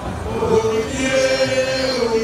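A man singing a traditional Ife song in the Yoruba Ife dialect into a handheld microphone, in long held notes.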